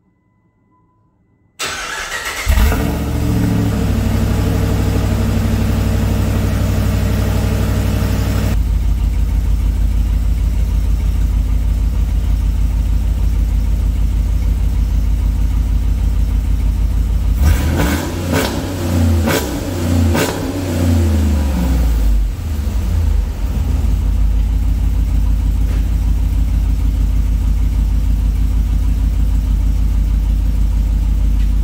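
Cold start of a Dodge Ram's 5.7 Hemi V8 fitted with BBK shorty headers, heard at the tailpipe: the starter cranks briefly about a second and a half in, the engine catches and runs at a fast idle, then drops a step about six seconds later. About halfway through it is revved in a few quick blips, then it settles back to a steady idle.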